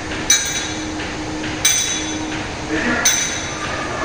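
Metal gym weights clanking: three sharp, ringing metallic clinks about a second and a half apart.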